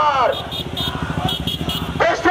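A voice through a loudspeaker trails off just at the start, then a motorcycle engine runs with a quick, even pulse. Two sets of three short, high beeps sound over it.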